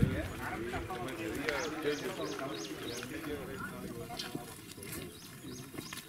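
Men's voices talking as a group walks uphill, fading after the first few seconds, with a high chirping call repeated about three times a second behind them.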